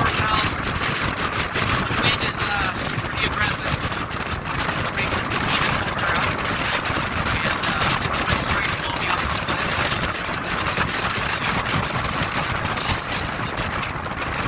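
Strong wind buffeting a phone's microphone, a steady rushing roar with constant gusty thumps.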